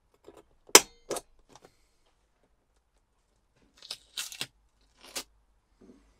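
Spring-loaded automatic centre punch snapping against a plastic van dashboard, making dents through a paper template's holes. Sharp clicks come in a pair about a second in, then a quick cluster around four seconds and a single snap a second later.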